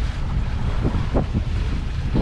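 Wind buffeting the microphone with a constant low rumble aboard a sailboat under sail, in about 17 knots of apparent wind, with water washing against the hull a few times.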